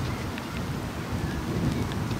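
Steady outdoor noise of wind on the microphone: a low rumble with a hiss over it, with no distinct event.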